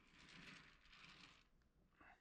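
Near silence, with a faint soft hiss lasting about a second and a half.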